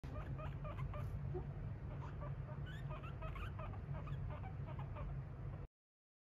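Guinea pigs squeaking in a quick run of short, repeated calls, some rising in pitch, begging for a treat, over a steady low hum. The sound cuts off suddenly near the end.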